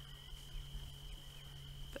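Faint night-time bush ambience: a steady high-pitched tone with a few faint short chirps over it, and a low steady hum beneath.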